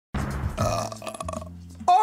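A person's long, rough throat sound, lasting about a second and a half, over a low steady hum.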